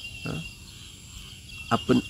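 An insect's steady high-pitched trill during a pause in a man's speech, fading out partway through and coming back near the end. A short voice sound comes early, and the man's speech starts again near the end.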